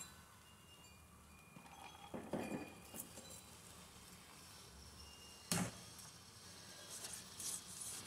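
Leftover rice tipped from a plastic container into a stainless steel pot: mostly quiet, with a few faint clinks and one sharper knock about halfway through, then a silicone spatula starting to stir near the end.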